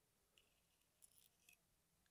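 Near silence, with a few faint, short metal ticks of steel tweezers handling the tiny pins and springs of a disassembled lock cylinder.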